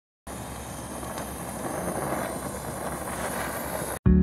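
A steady rumbling noise with a few faint pops in it, swelling a little midway and stopping abruptly at the end.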